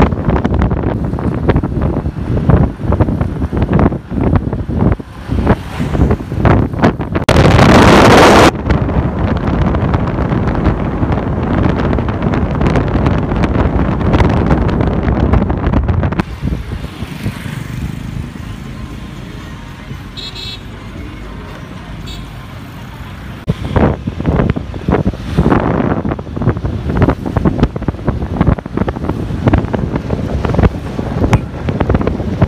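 Wind buffeting the microphone over the road noise of a moving vehicle, in uneven gusts, with one very loud blast about a quarter of the way in. The noise drops to a steadier, quieter rumble for several seconds past the middle, then the gusting returns.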